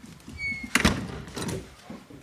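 Sliding glass patio door being slid along its track by its handle, with a brief squeak and then a loud thump.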